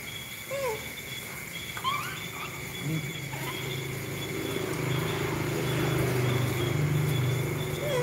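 Steady high-pitched insect trilling at night, with two short rising-and-falling squeaks about half a second and two seconds in. From about three seconds a low hum comes in, grows louder, then eases off near the end.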